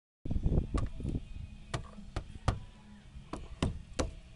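About seven irregular sharp clicks and knocks over a low rumble of handling noise, after a brief dropout of the sound at the start.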